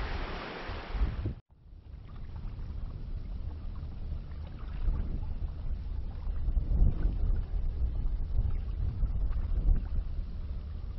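Wind buffeting the microphone with a steady low rumble, over faint lapping of open water. It begins after a brief dropout about a second and a half in, which follows the softer rush of a creek.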